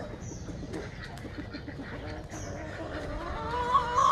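Backyard poultry calling, with a long wavering call that starts about three seconds in and grows louder. Soft footsteps on wet grass run underneath.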